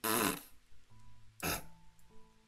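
A woman's short breathy laugh at the start, then another brief breath or laugh about one and a half seconds in, with faint steady tones humming in between.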